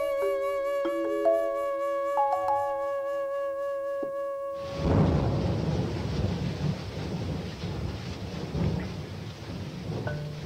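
A flute holds a long wavering note over ringing mallet-percussion notes; about halfway through these stop suddenly and a dense rumbling, hissing wash of percussion noise takes over.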